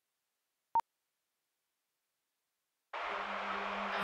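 A single short, pure beep under a second in, then silence; about three seconds in, a steady arena crowd din starts suddenly.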